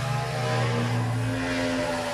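Freshly recharged refrigerator running: a steady hum with an even hiss over it as the compressor drives refrigerant through the evaporator, which is frosting up.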